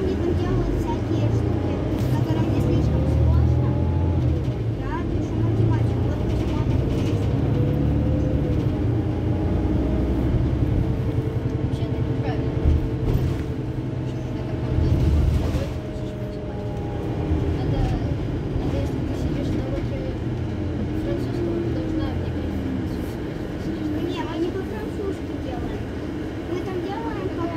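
Iveco Crossway LE city bus idling at a stop: a deep, steady engine rumble that eases off about sixteen seconds in, with people's voices over it.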